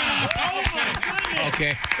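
Several people exclaiming over one another, with scattered hand claps, in reaction to a live one-man-band performance that has just ended.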